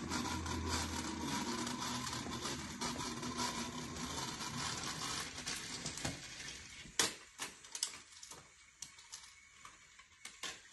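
Battery-powered toy train's small motor running along plastic track, a steady whirring hum that stops about six seconds in. A sharp clack follows about a second later, then a few lighter clicks and knocks.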